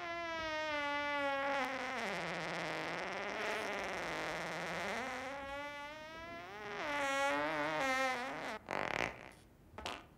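A man's long, drawn-out fart with a wavering pitch that sinks in the middle and rises again, breaking into a short sputter near the end.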